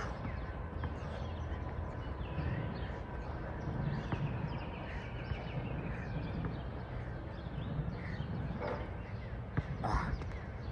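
Outdoor ambience: birds calling throughout over a steady low rumble, with a short, louder animal call just before the end.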